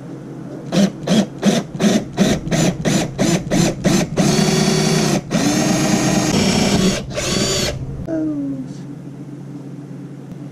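Cordless drill boring a pilot hole into a fiberglass boat transom: about ten short trigger bursts in quick succession, then three longer steady runs as the bit goes through, stopping about eight seconds in.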